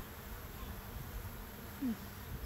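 Honeybees buzzing around an open hive as a frame of comb is lifted out, with a short knock at the start.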